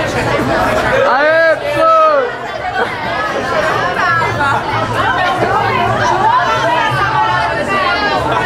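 Several people's voices chattering and calling out over each other, with one loud, high-pitched drawn-out call about a second in.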